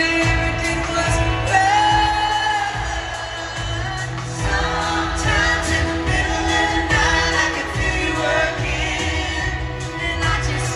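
A live country band playing with female lead vocals, recorded from the audience, with singers taking turns on sustained, held lines over a steady backing.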